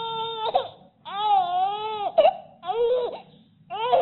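Baby crying in four wails with short breaths between. The longest, about a second long, wavers up and down in pitch.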